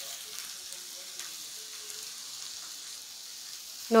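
Banana-leaf-wrapped parcels frying in oil on a hot griddle: a steady, even sizzle.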